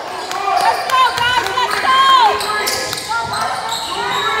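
Basketball bouncing on a gym's hardwood floor during play, with several short, high-pitched shouts and calls from players and spectators, echoing in the large hall.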